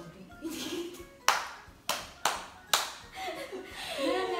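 Four sharp smacks in quick succession, about half a second apart, each dying away quickly; a voice starts up near the end.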